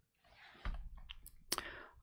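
A faint breath between sentences, with a few small, sharp clicks about half a second and a second and a half in.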